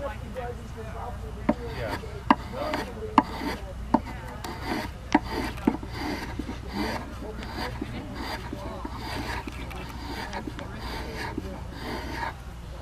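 Spokeshave shaving a green walnut ladle handle held in a shaving horse, in repeated strokes about one and a half a second. A few sharp wooden knocks come in the first half as the tool and workpiece are handled.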